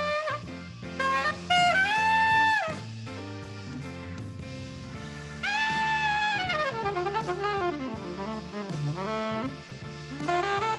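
Saxophone playing a jazz melody of long held notes over a low accompaniment, with a loud held phrase about two seconds in and a long note that falls away in a gliding line in the second half.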